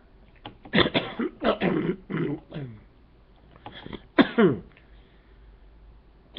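A man making wordless vocal noises in two bursts: a longer run starting about a second in, and a shorter one around four seconds in that ends in falling pitch glides.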